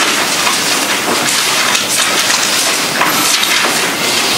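Paper rustling: the thin pages of Bibles being turned and leafed through, a dense irregular rustle with no single loud stroke.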